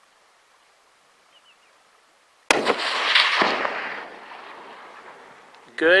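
A single shot from a Tikka T3 rifle in 6.5x55 about two and a half seconds in, its report rolling away over about two seconds.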